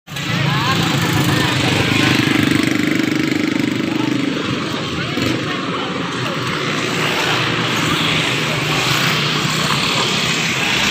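Steady roadside ambience: a motor vehicle engine running, with people's voices in the background.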